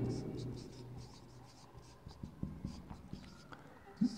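A marker pen writing a word on a whiteboard: a quick run of faint, short strokes.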